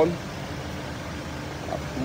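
Hyundai Starex van's engine idling: a steady low hum.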